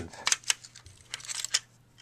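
Small metal DC motors clicking and clinking as they are picked up and handled in a parts tray: a few short, sharp ticks.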